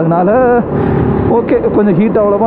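A man talking over the steady drone of a motorcycle in motion; about a second in his voice briefly pauses and the even engine hum and road rumble come through.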